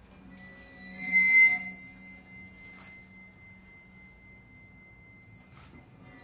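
A bow drawn against the metal hoop of a large drum, giving a sustained high ringing tone with overtones that swells to its loudest about a second in, then holds quietly and thins out near the end.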